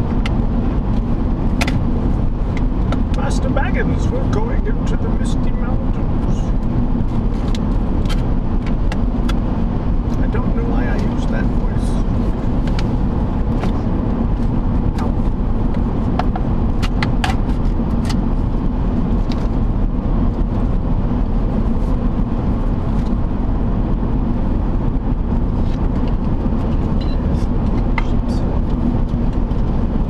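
Steady road and engine noise inside a car cabin at highway speed, a continuous low rumble with scattered sharp clicks.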